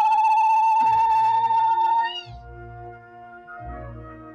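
A woman's zaghrouta (ululation), one loud high trill with a fast warble held for about two seconds and then cut off. Under it plays festive wedding music with a low drum beat.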